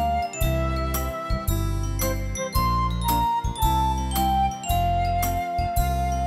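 Instrumental intro played on a Yamaha PSR-S970 arranger keyboard: a melody over a steady bass line and a regular drum beat, settling on a long held note near the end.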